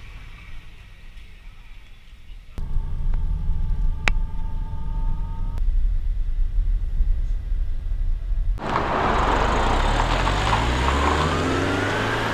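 Faint low street hum, then the low rumble of a minibus heard from inside its cabin, with a steady whine for a few seconds. Near the end comes a louder rushing noise with engine pitch rising as the minibus accelerates away.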